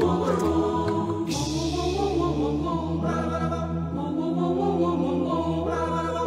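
A mixed a cappella choir of men's and women's voices sings sustained harmony over a steady low bass line, with no instruments. A hiss sounds about a second in and lasts about a second.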